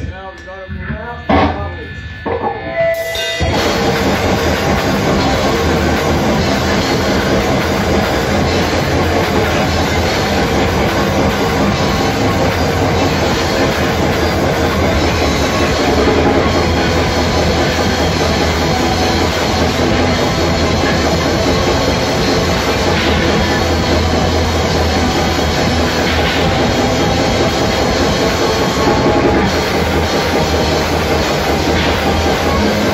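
Metal band playing live, with distorted electric guitars and drums. After a sparse opening of separate hits, the full band comes in about three seconds in, and the sound stays dense and loud from there on.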